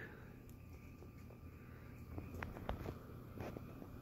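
Quiet room tone with a faint low hum and a few scattered soft clicks.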